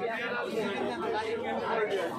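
People talking, with voices overlapping in general market chatter.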